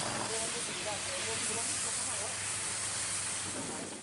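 A fire hose spraying water onto burnt, smouldering peat ground: a steady hiss, with faint voices in the background.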